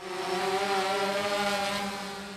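Small multirotor drone's propellers buzzing at a steady pitch, starting suddenly and fading out toward the end.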